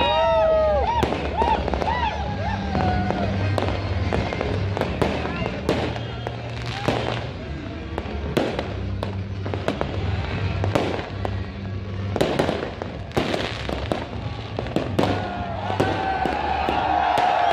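Fireworks going off: repeated sharp bangs and crackles, scattered irregularly throughout.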